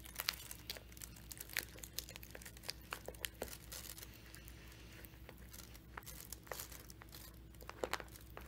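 Faint, irregular crinkling and small crackles of iridescent plastic film and loofah mesh netting being pressed and handled by hand inside a bowl.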